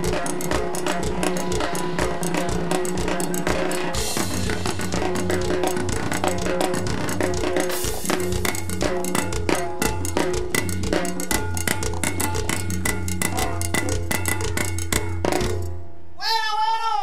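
Live cumbia band playing, with timbales and drum kit hitting busy strokes over a steady bass line; the music stops abruptly near the end.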